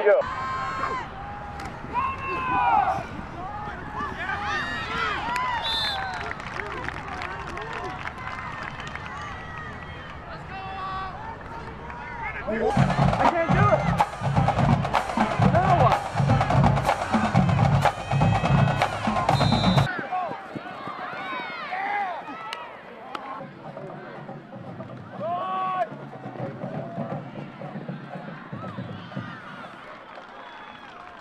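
Football-game crowd voices and shouts, with drums playing a steady beat in the middle for about seven seconds before cutting off suddenly.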